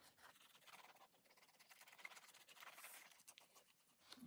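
Near silence with faint light scraping as the nozzle of a squeezy bottle of Art Glitter glue is drawn down a fabric-covered book spine, laying on a thick line of glue.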